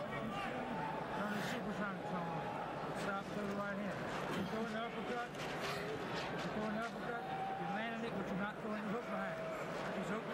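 Several men talking close together over the steady noise of an arena crowd, with no single voice standing out.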